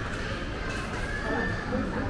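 Busy indoor shopping-mall ambience: indistinct chatter of passing shoppers.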